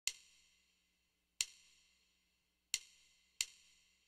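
Faint count-in clicks from a percussion sound: four short, bright ticks, the first three spaced slowly and the last one closer, counting in the backing track.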